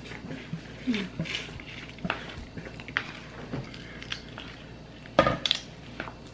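Chopsticks and tableware clicking and tapping against bowls and plates while eating, in scattered small strokes, with one louder knock about five seconds in.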